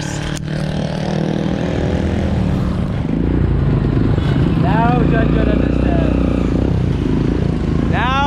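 Motorcycle engine of a Filipino tricycle (motorcycle with sidecar) running with a steady low hum, growing louder about three seconds in.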